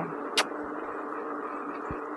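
Steady running noise of an electric unicycle ridden along a paved road: a hiss of tyre and wind noise with a faint motor hum. A single sharp click comes about half a second in.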